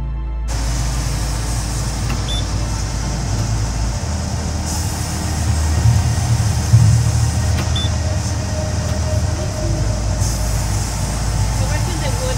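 Background music cuts off about half a second in, giving way to a sawmill headrig at work: a band saw cutting a cottonwood log as the carriage feeds it through. The sound is a steady, loud mechanical din with a low hum, peaking about six to seven seconds in.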